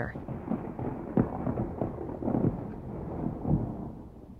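Thunder rolling: a low rumble with a few sharper cracks at about a second, two and a half and three and a half seconds in, dying away near the end.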